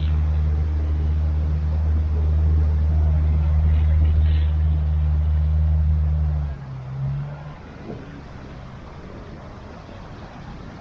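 A 4WD's engine held at steady revs, a loud low drone at an unchanging pitch that cuts off abruptly after about six and a half seconds, followed by a brief second burst about a second later.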